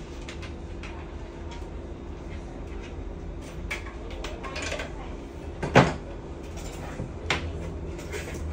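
Clicks and knocks of rummaging in a storage cabinet for another charging cable, with one sharp knock a little before six seconds in and a smaller one about seven seconds in, over a steady low electrical hum.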